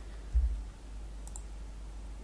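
A short, dull low thump near the start, then a faint sharp click of a computer mouse a little past halfway, over a steady low hum.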